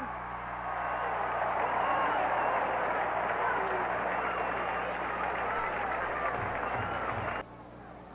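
Stadium crowd cheering a touchdown: a dense, steady mass of many voices that cuts off suddenly about seven and a half seconds in.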